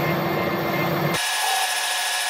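Wilson metal lathe running, with a turning tool cutting a metal bar down to the base diameter for a thread: a steady machine hum with a hiss from the cut. About a second in the low hum drops away, leaving a brighter hiss.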